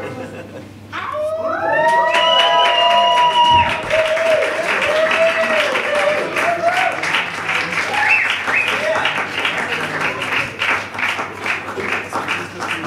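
A track's last notes die away, then about a second in a live audience breaks into cheering and whoops, followed by steady applause.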